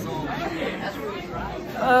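Chatter of many students talking at once in a school hallway, with overlapping voices and no single clear speaker.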